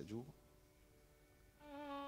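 A short spoken word, then near silence; about one and a half seconds in, a faint musical note with overtones begins and is held steady in pitch as background accompaniment.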